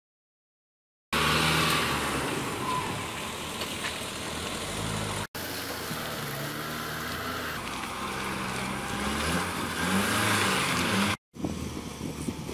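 A pickup truck's engine running as the truck drives along and then onto a lawn, starting about a second in, with a few rises in pitch as it picks up speed. The sound cuts off abruptly twice.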